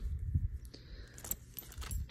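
A belt being handled and turned over: its metal buckle clinks lightly in a few small scattered clicks, over a low rumble from handling.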